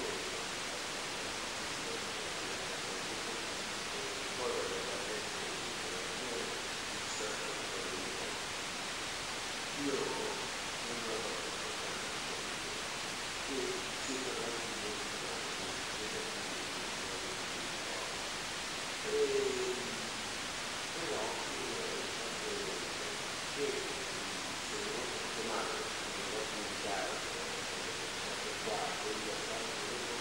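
Steady recording hiss with faint, muffled speech heard on and off, too distant to make out.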